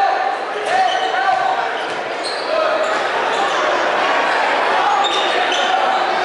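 Live basketball game in a gym: sneakers squeak on the hardwood court and a ball bounces, over crowd voices echoing in the hall.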